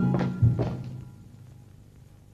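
Film background score: two low, struck notes about half a second apart, each ringing and then fading away.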